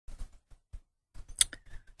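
A few soft, scattered clicks, the sharpest about one and a half seconds in.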